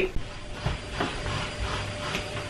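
Vacuum cleaner running in another room: a steady drone with a low hum, with a couple of faint knocks about a second in.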